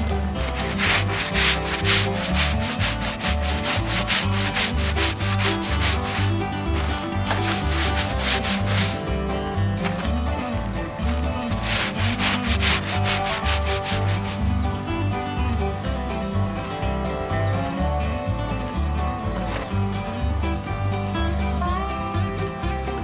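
A stiff brush on a long handle scrubbing canvas tent fabric in quick back-and-forth strokes. The scrubbing is heaviest in the first nine seconds and again about twelve to fourteen seconds in.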